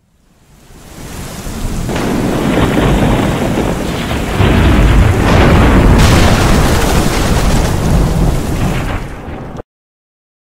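Thunderstorm sound effect: heavy rain with rolling thunder. It fades in over the first two seconds, grows louder from about halfway, and cuts off suddenly near the end.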